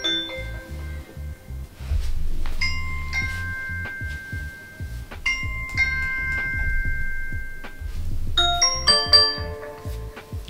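Ring doorbell chime previews playing as different doorbell sounds are selected in the Alexa app. There are short electronic chimes: two similar falling two-note chimes a few seconds apart, then a busier chime of many tones near the end.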